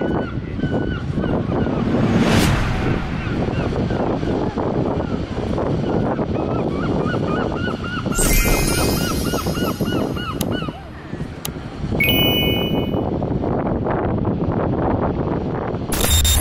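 Waves breaking and washing over a shingle beach, with gulls calling over the surf: scattered calls at first, then a fast run of calls about halfway through. A short, sharp sound effect is heard around the same point.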